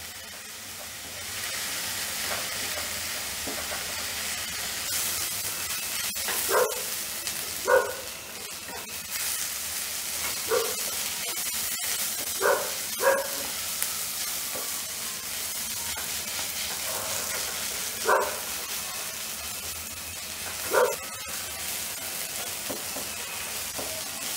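Chopped onions sizzling in a little oil in a nonstick kadai while they are stirred with a silicone spatula, frying down until soft and pink. About seven short, sharp sounds at irregular intervals stand out above the steady sizzle, with a few faint clicks.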